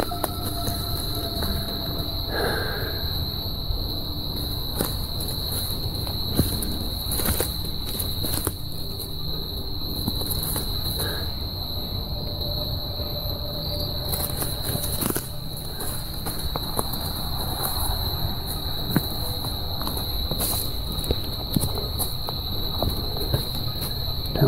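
Steady, high-pitched chorus of insects in woodland, with scattered light crunches and rustles of footsteps through dry leaf litter and camera handling.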